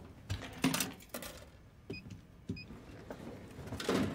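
Snack vending machine in use: scattered soft clicks and knocks, two short electronic beeps about two seconds in as its keypad is pressed, then a louder clunk near the end as the item drops into the tray.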